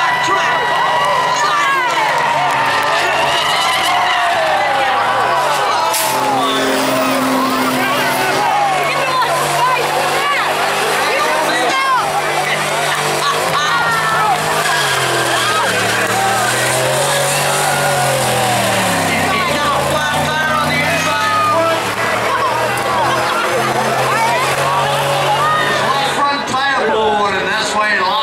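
A Chevy Silverado 2500HD's 6.0 L V8, breathing through Flowmaster mufflers, revving up and down again and again as the truck drifts, with its rear tyres squealing and spinning.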